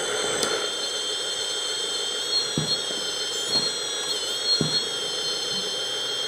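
Steady high-pitched whine of a 1/14 RC hydraulic bulldozer's electric hydraulic pump while the rear ripper is raised and lowered; the whine dips briefly in pitch in the middle as the ripper cylinder takes load, with a few soft knocks about a second apart.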